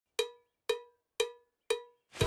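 Four evenly spaced cowbell strikes, about two a second, each a sharp hit with a short ringing decay: a count-in just before the song's music starts.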